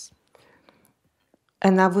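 A pause in speech: near silence with a faint breathy sound, then the speaker's voice resumes near the end.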